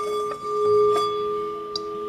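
Tibetan singing bowl sung by rubbing a wooden stick around its rim: a steady ringing hum of two tones that swells a little under a second in and then holds.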